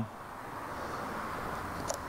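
Steady background hiss of a workshop, fairly quiet, with one faint click near the end.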